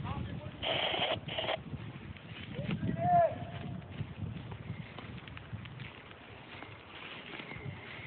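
Forest fire burning, crackling and popping irregularly through burning timber. Two short hissing bursts come about a second in, a faint voice is heard around three seconds, and a steady high tone starts near the end.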